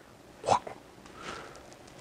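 A single brief vocal sound about half a second in, followed by faint room noise.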